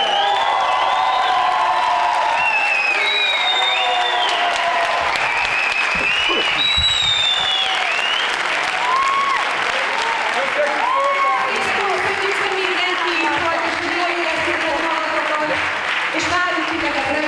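Large theatre audience applauding steadily, with many voices cheering and calling out over the clapping.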